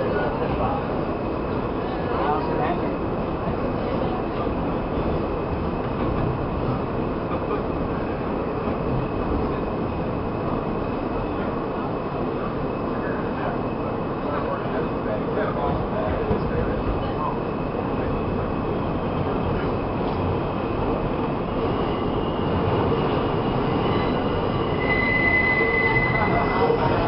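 Steady running noise of a New York City subway train heard from inside the car as it travels between stations. Thin high wheel squeal sounds over it, growing stronger and louder in the last few seconds.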